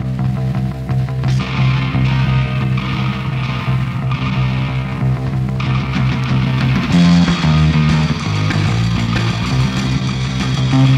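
Live punk rock recording: a band playing electric guitar, bass guitar and drums, with steady held bass notes. About seven seconds in, the bass line moves to new notes and the band gets a little louder.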